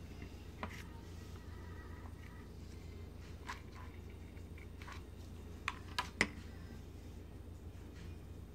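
Steady low room hum with a few small clicks and taps from handling a hot glue gun and a burlap bow on a wooden board; the sharpest clicks come as a quick cluster of three about six seconds in.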